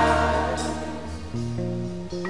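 Gospel song with sustained, choir-like singing on held notes, dying away as the song ends; a new low chord enters about a second and a half in.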